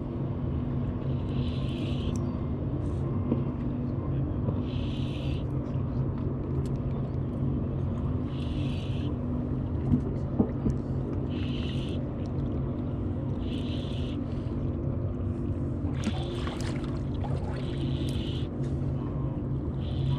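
A boat's motor idles with a steady low hum. Every second or few there is a short whir from a spinning reel as a hooked fish is fought on the line.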